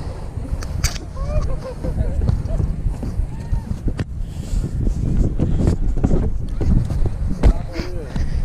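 Running footsteps on a dirt trail, picked up by a body-strapped action camera, with heavy wind and handling rumble and faint voices of other runners nearby.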